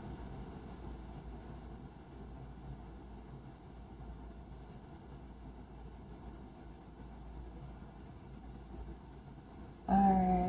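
Faint scattered light ticks and rustling over low room noise, from a gloved hand pressing crushed glass and resin on wax paper.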